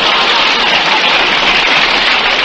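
Studio audience applauding and laughing: a loud, steady wash of clapping on an old radio broadcast recording.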